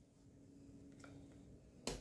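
Near silence, with faint soft sounds of a silicone spatula spreading whipped cream-cheese filling in a foil pie pan, then one sharp click near the end.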